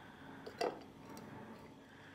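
A short clink of kitchenware knocking against the mixing bowl about half a second in, followed by a couple of faint ticks.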